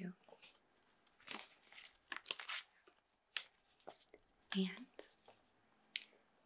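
Paper brochure rustling and crinkling in several short bursts as it is handled.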